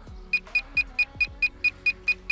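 Short high electronic beeps from the Eachine Mini F4U Corsair's radio transmitter, about five a second and eight in all, each one a step of aileron trim as the trim button is held to the right to level a drooping aileron.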